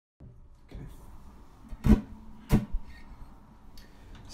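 Acoustic guitar handled between songs: two sharp knocks on it about two seconds in, half a second apart, with the strings ringing faintly after them.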